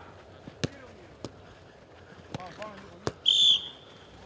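A football kicked during a passing drill: a few sharp thuds, spaced unevenly, at under a second in, a little after a second and again at about three seconds. Just after the last kick, a sports whistle is blown once, short and loud, as the coach's signal in the drill.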